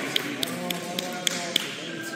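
Voices echoing in a large sports hall, with a run of light, sharp taps at a little over three a second.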